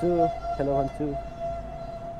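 A steady tone held at one unchanging pitch, running without a break, while a man calls "hello" over it.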